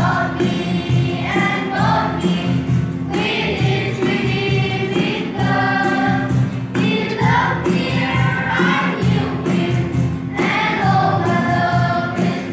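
A children's choir singing a hymn together, with steady low notes held underneath the voices.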